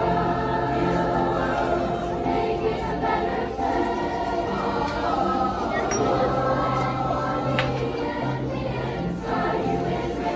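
A large middle-school choir singing together, many voices on sustained, held notes.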